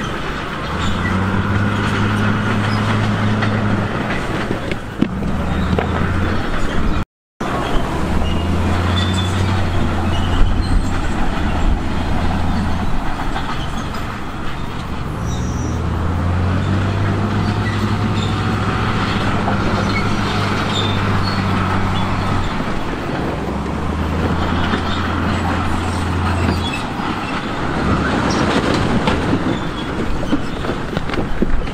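Heavy diesel engines of a Komatsu D58E bulldozer pushing rock and of a dump truck tipping its load, a steady low drone that shifts up and down in stretches of a few seconds. The sound cuts out briefly about seven seconds in.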